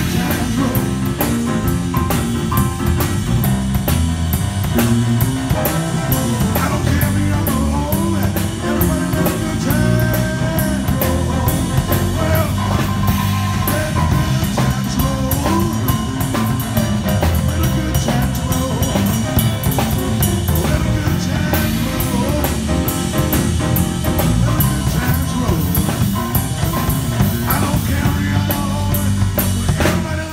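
Live rock'n'roll band playing an instrumental passage with no vocals: stage piano, drum kit and electric bass together at a steady, busy beat.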